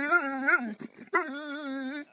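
A Labrador whining in two long, wavering, high-pitched cries, with a short break between them a little before halfway: an excited dog begging for a piece of bread.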